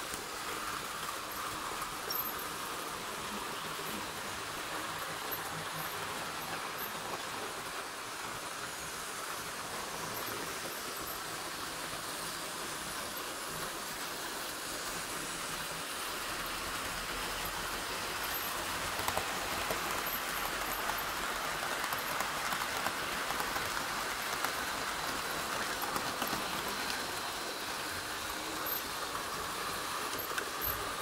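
Model trains running on a layout: a steady whirring hiss of small locomotive motors and wheels rolling on the track, a little louder past the middle.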